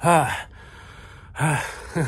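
A man sighing twice, each a short, breathy, voiced exhale falling in pitch, about a second and a half apart.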